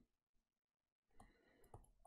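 Near silence, with a few faint clicks of a stylus on a tablet as handwriting is added, about a second in and again near the end.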